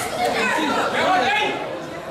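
Several people talking and calling out at once in a large hall, the voices overlapping.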